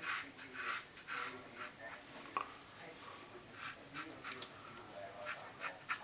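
Razor strokes scraping through lathered beard stubble: a run of short, faint, scratchy strokes, about two or three a second.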